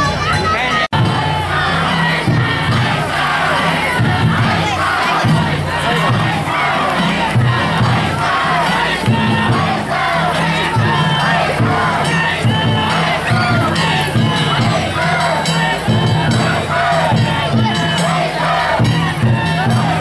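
A large crowd of danjiri festival men shouting and chanting together, loud and continuous, over a repeating low beat. The sound cuts out for an instant about a second in.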